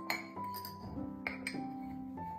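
Gentle instrumental music with held notes, over a few sharp clinks of a copper measuring cup knocking against a glass jar while rolled oats are scooped.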